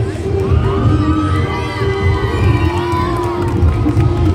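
Children in an audience shouting and cheering, high excited voices rising and falling for about three seconds, over dance music with a heavy bass.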